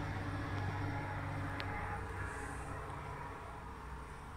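A steady low hum, like a small motor running, that slowly grows a little fainter. There is one faint tick about a second and a half in.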